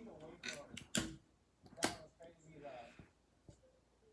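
A few faint sharp clicks, the two loudest about one second and just under two seconds in, among quiet handling noise and a faint murmured voice.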